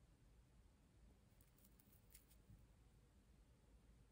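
Near silence: room tone, with a few faint ticks in the middle from a tennis bracelet being handled in the fingers.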